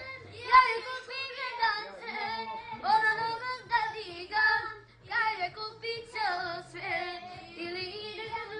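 A high voice singing a melody in held, sliding phrases, over faint low backing notes.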